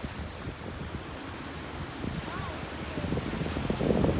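Small waves washing onto a sandy beach, with wind buffeting the microphone as a low rumble; the surf grows louder over the last second or two.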